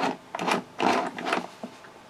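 Hard plastic toy playset being handled as a figure is fitted onto its dance floor: about four short plastic rattles and scrapes, roughly half a second apart.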